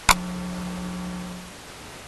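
A sharp click followed by a steady low hum that lasts about a second and a half.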